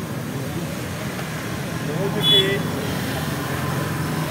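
Steady low rumble of background vehicle noise in the open air, with a short burst of a man's voice about two seconds in.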